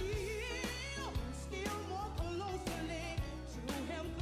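Gospel song: a solo voice sings a melody with wide vibrato, accompanied by bass notes and drum hits.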